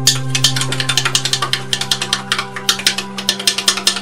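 Background music with a steady drone. Over it comes a fast run of sharp clicks or taps, about eight to ten a second.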